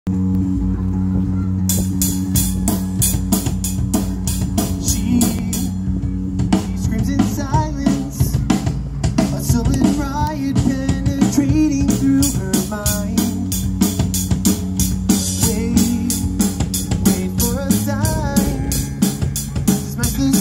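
Live rock band: distorted electric guitars holding a chord, with a drum kit coming in about two seconds in, keeping a steady beat on cymbals and snare. A lead vocal joins about six seconds in.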